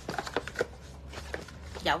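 Handling noise from a leather wallet in its cardboard presentation box: several light clicks and rustles in the first second and a half as the box and wallet are moved.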